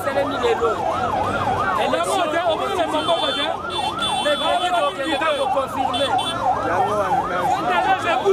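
Several overlapping siren-like wails, each rising and falling a few times a second, over the noise of a large outdoor crowd.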